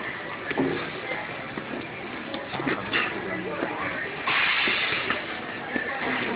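Busy store ambience with background voices and a few light knocks. A little over four seconds in comes a short rush of noise lasting under a second, the loudest sound here.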